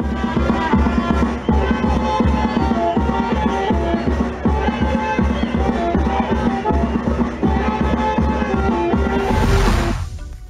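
Pandilla moyobambina dance music from a band, the big bass drum (bombo) beating loud and steady under a melody. Near the end the music gives way to a rising swoosh.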